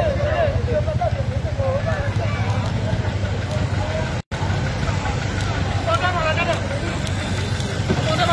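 Steady low rumble of an idling vehicle engine, with people's voices talking over it. The sound cuts out for a moment about four seconds in.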